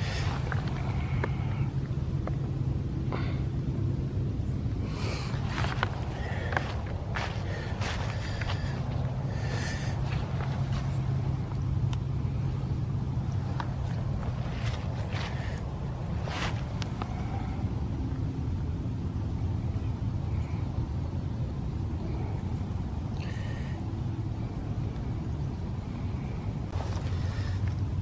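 Footsteps brushing and crunching through frosty grass and dry fallen leaves at an uneven pace, over a steady low rumble.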